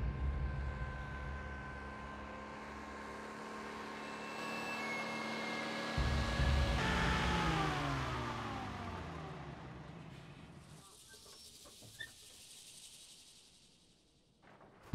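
Army truck engine running as the truck approaches, growing louder. About seven seconds in its note slides down as the truck slows to a stop, then the sound fades away, with one small click near the end.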